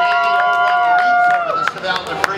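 A horn sounds a steady chord of several notes: it slides up as it starts, holds level, then slides down and stops about one and a half seconds in.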